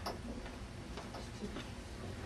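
A sharp click followed by a few fainter clicks and knocks from a plug and cord being handled, over a steady low hum.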